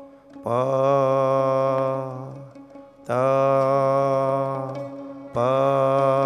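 A man's voice intoning the syllables "pa", "ta", "pa" as three long, steady held tones of about two seconds each, with short breaks between them.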